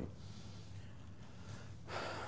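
Faint room tone and microphone hiss, with the lecturer drawing a breath near the end, before he speaks again.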